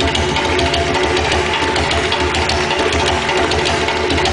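Djembe played with the hands in a fast, steady rhythm, heavy bass strokes under dense, crisp slaps, with other drums ringing along. The rhythm imitates a moving train.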